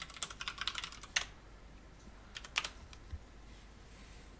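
Typing on a computer keyboard while logging on to a remote server: a quick run of keystrokes over the first second, ending in one harder key press, then a few more keystrokes about two and a half seconds in.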